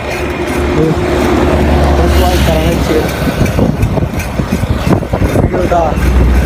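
A motor vehicle passing on the road, its engine note steady for the first couple of seconds over a low rumble, heard from a moving bicycle. Uneven low buffeting follows through the rest.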